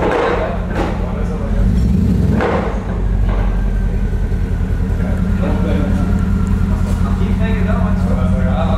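Mercedes-Benz W221 S-Class engine running at idle, with an even pulse and a brief swell about two seconds in.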